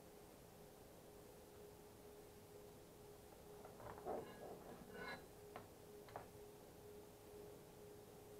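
Faint steady whine of a stepper motor driving a 3D printer's lead-screw bed slowly forward at the end of the print, with a couple of faint clicks about midway.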